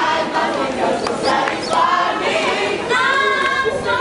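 A group of voices singing a gospel song together as a choir, with long held notes.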